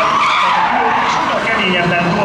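Formula E Gen 2 electric race car's tyres squealing and skidding as it spins doughnuts, burning rubber.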